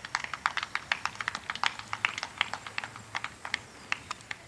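A few people clapping: scattered, irregular hand claps, several a second, thinning out toward the end.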